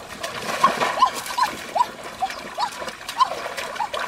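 Water splashing as feet and hands churn a shallow stream, with a short animal call repeating two to three times a second over it.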